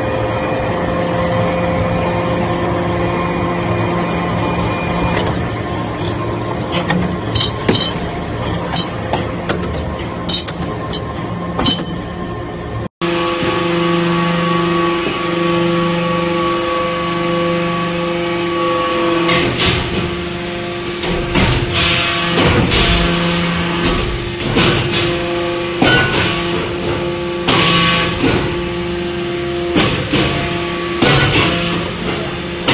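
Hydraulic metal-chip briquetting press running: a steady hum from its hydraulic pump and motor, with scattered clicks. In the second half, frequent metallic knocks and clanks of the press working the metal chips join in.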